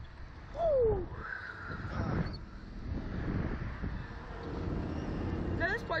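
Wind rushing and buffeting the microphone of a camera on a swinging slingshot ride, a steady low rumble. A rider's short moan falls in pitch about half a second in, and a higher voice cries out around a second and a half in.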